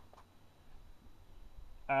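Near quiet with only faint background noise, then a man's long, steady 'um' begins just before the end.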